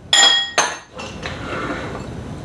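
Small glass dish set down on a countertop with a sharp ringing clink, and a second shorter clink about half a second later, followed by softer scraping and handling noise.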